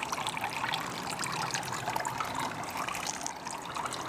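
Steady trickling of running water, a continuous light splashing with no clear rhythm.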